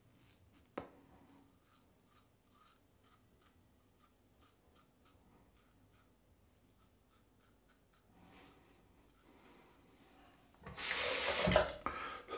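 Brass double-edge safety razor with a Gillette 7 O'Clock Black blade scraping through lathered stubble on the upper lip, in many faint short strokes. About eleven seconds in, a loud rush of noise lasting under a second.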